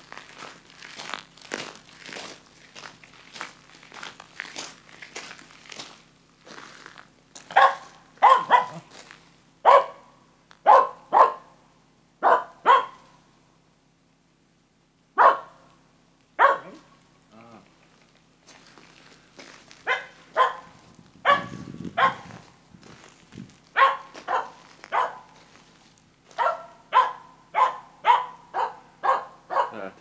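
Footsteps crunching on a gravel road, then a Finnish Spitz barking again and again, often in pairs, at a squirrel up in the trees: the breed's bark-pointing at treed game. Near the end the barks come faster, about two a second.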